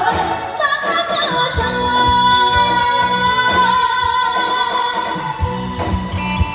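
A woman sings a Mandarin song into a microphone, backed by a live band with drums. About a second in she holds one long high note, which ends just before the close.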